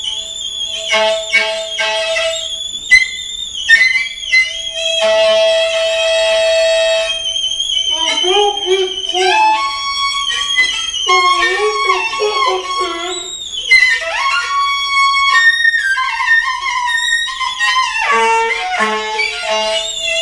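Free improvised music: saxophone squeals and shifting pitched tones mixed with other wavering, gliding squeaks, with one steady tone held for a couple of seconds about five seconds in.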